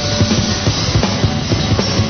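Loud rock music from a band: a drum kit keeps a steady, driving beat over bass guitar and guitars.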